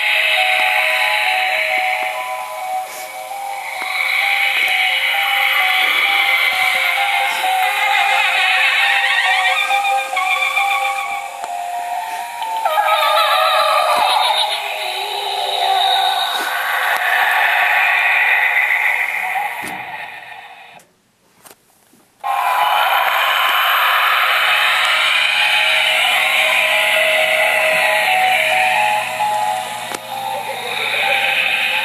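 Music played through the small built-in speaker of an animated Gemmy Halloween ghost prop. It cuts out for about a second and a half about two-thirds of the way through, then starts again.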